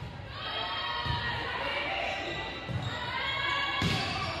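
A volleyball bouncing several times on the hardwood gym floor, a second or more apart, then a sharp hit near the end. Voices of players and spectators call out throughout, echoing in the gym.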